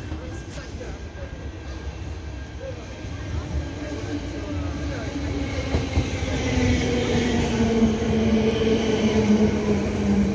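Melbourne Metro electric suburban train running into a station platform, growing steadily louder as it approaches. From about six seconds in, a low motor whine drops in pitch as the train slows to stop, over the rumble of the wheels on the rails.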